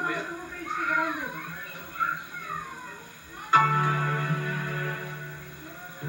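Voices talking, heard through a television's speaker, then about three and a half seconds in a single chord is struck on an instrument and rings on, slowly fading.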